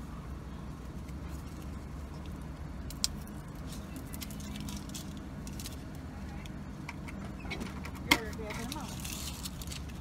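Car engine idling, a steady low hum heard from inside the cabin, with a single sharp click about three seconds in and a short knock around eight seconds.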